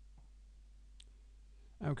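A single short computer-mouse click about halfway through, over faint room tone. A man's voice starts near the end.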